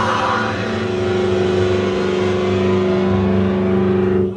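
Heavy metal band live, holding a loud distorted chord on electric guitars and bass that rings steadily over drum rumble: the closing chord of the song.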